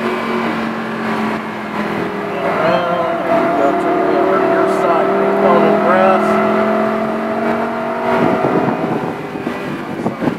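Supercar engine heard from inside the cabin, pulling at steady revs on part throttle. Its pitch climbs a little a few seconds in, and near the end the steady note breaks up as the throttle comes off.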